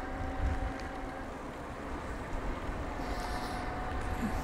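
Wind buffeting a handlebar-mounted microphone and tyres rolling on tarmac as an e-bike rides along at moderate speed. The sound is a steady, even rush with a faint steady hum underneath.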